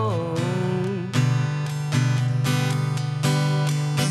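Acoustic guitar strumming chords, the strokes ringing on between them, in an instrumental gap of a song. A sung note trails off just at the start.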